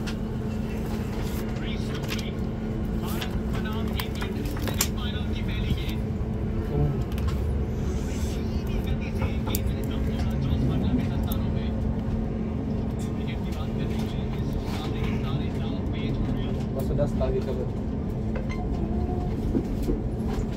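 Inside a Class 455 electric multiple unit as it pulls out of a station and moves off: a steady low rumble of running gear with a constant hum, and scattered sharp clicks of the wheels over rail joints and points.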